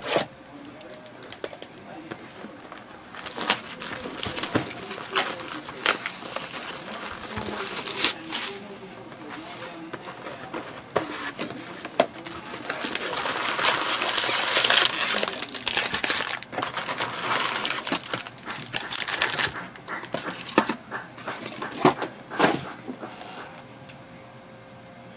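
A cardboard trading-card hobby box being opened and its foil card packs handled: scattered knocks and taps of cardboard on the desk. There is a longer stretch of rustling and crinkling about halfway through as the box is opened and the packs come out.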